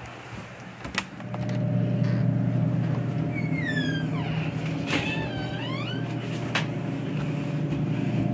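A door latch clicks about a second in, then a steady low hum from a Coca-Cola vending machine's refrigeration unit. Squeaky rising and falling glides come through in the middle, with a few more clicks.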